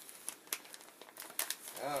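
Paper and plastic packaging crinkling and rustling as it is handled inside a fabric bag, in scattered faint crackles.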